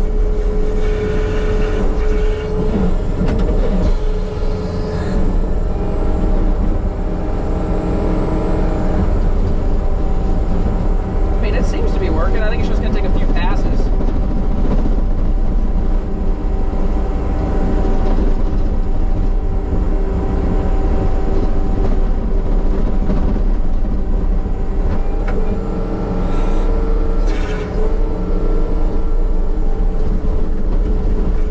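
John Deere compact track loader's diesel engine running steadily under load, with the hydraulically driven Harley rake grinding through the dirt of the trail; a steady whine over the engine's rumble, and the pitch shifts briefly about twelve seconds in.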